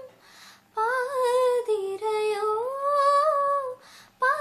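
A woman singing unaccompanied. She takes a quick breath, then about a second in sings a slow phrase of long held notes that dip and then rise.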